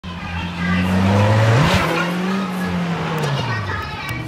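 A car engine running hard, its pitch jumping up sharply about one and a half seconds in and easing off near the end, with a burst of rushing noise at the jump.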